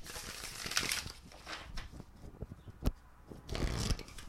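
A deck of oracle cards being shuffled by hand: soft rustling and sliding of the cards, a single sharp tap about three seconds in, then a louder burst of shuffling near the end.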